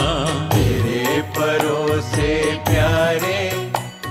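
Devotional shabad (gurbani hymn) singing: a voice holds wavering melodic notes over instrumental accompaniment with repeated low drum strokes.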